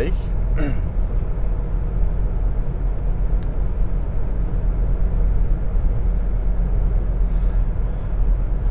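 Steady road and engine rumble inside a car cabin at motorway speed, with a soft exhale of vapour near the end.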